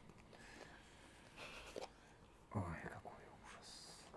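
Mostly quiet room with a brief, quiet voice about two and a half seconds in, and a few faint hissy breaths or rustles around it.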